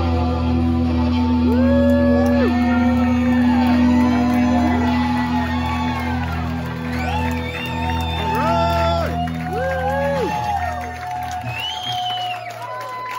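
Electric guitars and bass holding a final chord that rings out, with audience members whooping and cheering over it; the chord fades somewhat near the end.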